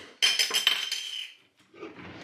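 Cutlery and dishes clattering in a burst of rattles lasting about a second, with a metallic ringing through it, then dying away.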